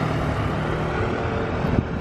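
Road traffic on a city street: a steady rumble of passing vehicles.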